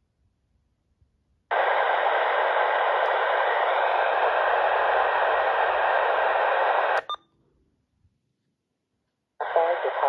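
Uniden Bearcat BC125AT scanner's speaker giving a steady static hiss for about five seconds as it stops on an AM airband frequency, cut off by a click. Near the end, a radio voice from an air-traffic broadcast comes through the speaker.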